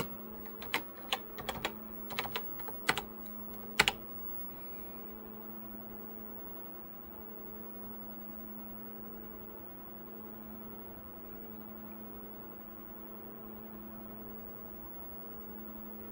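Keys clicking on a Tandy Color Computer 3 keyboard: a quick run of keystrokes over the first four seconds, the last and loudest about four seconds in. After that only a steady low hum of several tones remains.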